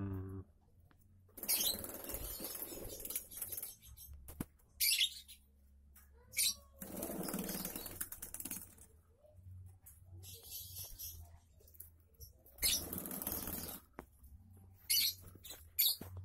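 Small cage birds fluttering their wings in an aviary: three bursts of flapping, each one to two seconds long, with a few short high calls between them.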